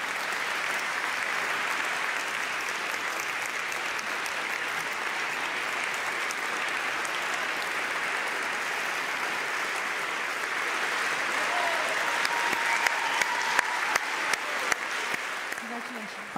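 A large audience applauding, a dense, sustained clapping that runs on without a break; in the last few seconds single claps stand out more sharply.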